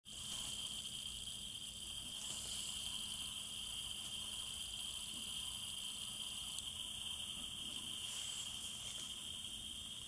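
Steady hiss with a high, even whine running under it and no speech or music: the noise floor of a poor-quality audio capture.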